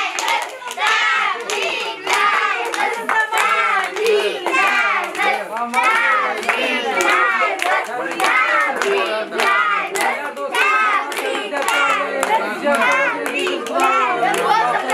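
A group of people clapping their hands steadily, over many overlapping voices.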